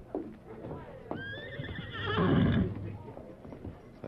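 A horse whinnying, a sound effect in a 1949 radio drama: one long call starting about a second in, rising sharply and then wavering before it fades.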